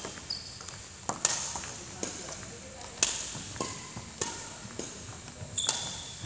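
Badminton rackets striking shuttlecocks, sharp cracks about once a second, echoing in a large hall, with short squeaks of shoes on the wooden court between hits.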